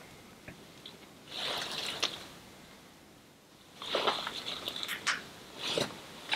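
Rustling and crackling of clothing and gear as seated people shift and handle a chest harness, in two stretches: briefly about a second in, then longer from about four seconds in.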